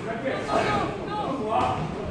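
Men's voices calling out from ringside in a large hall, loudest from about half a second in to near the end.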